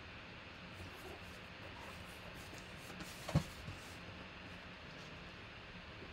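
A cardboard box set down on a tabletop mat with one dull thump about three seconds in, then a softer knock. Faint handling ticks come before it, over low room hiss.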